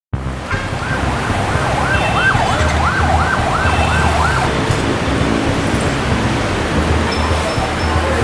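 A siren sounding a fast yelp, a rising-and-falling wail repeating about two or three times a second, which stops about halfway through. Under it runs a steady low rumble of street traffic.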